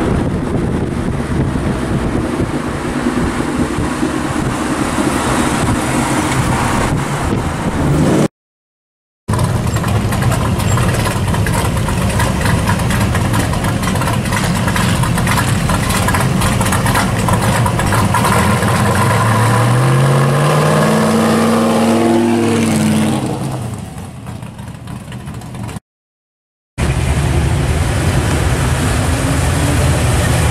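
Loud exhausts of hot rods and muscle cars driving past, in three short clips split by brief silences: a late-model Ford Mustang, then a 1955 Chevrolet whose engine revs up in a rising pitch about 20 seconds in before fading away, then a first-generation Chevrolet Camaro.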